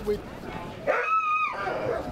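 A sled dog giving one high-pitched, drawn-out yelp about a second in, lasting about half a second.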